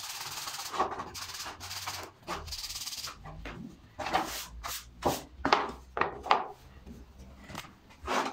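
Sandpaper rubbed by hand over a small wooden block, a steady rasping for about three seconds, then a run of short knocks and scrapes as wooden pieces are handled on the workbench.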